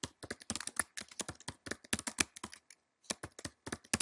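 Typing on a computer keyboard: a run of quick key clicks as words are typed, with a short pause a little before three seconds in.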